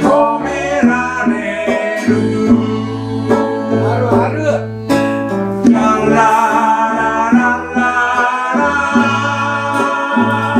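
A live acoustic band playing a song with singing, held up by sustained notes from an acoustic bass guitar, with ukulele, acoustic guitar, accordion and drum kit.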